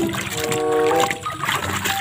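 Water sloshing and splashing in a plastic tub as hands scrub a muddy ball in soapy water, over background music with short sustained notes.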